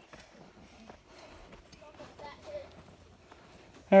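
Faint footsteps on a dirt trail during a steep uphill climb, with a faint distant voice about two seconds in.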